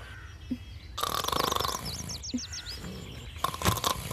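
A rasping noise about a second in, overlapped by a quick run of about eight high chirping bird calls, with a couple of soft thuds.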